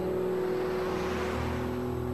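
A car passing by, its road noise swelling and fading in the middle, over a low sustained drone of background music.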